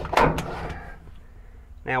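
A universal aftermarket seat belt jerked hard, its retractor catching and locking with a sharp snap just after the start, which shows the belt locks as it should. Then only faint handling noise.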